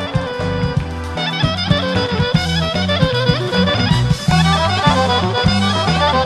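A Bulgarian folk band playing a lively instrumental tune, a reedy or bowed lead melody over a steady bass line and beat. The band fills out with a fuller, brighter sound about a second in.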